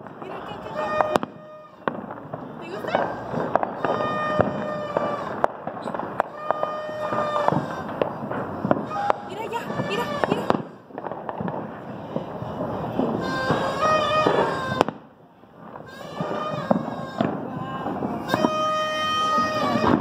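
Fireworks and firecrackers going off all around, a dense run of sharp bangs and pops with brief lulls. Several short, steady held tones sound over the bangs at intervals.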